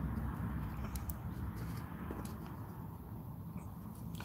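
Quiet low steady hum with a few faint, light ticks, as a soldering iron tip is worked along the pins of a surface-mount chip.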